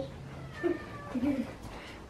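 Two short, quiet vocal sounds, about half a second and a second in, with a faint steady hum that stops early on.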